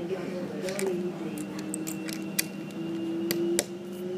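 Lego pieces being handled, with several sharp plastic clicks, under a long held hum in a child's voice that starts about a second in and rises slightly.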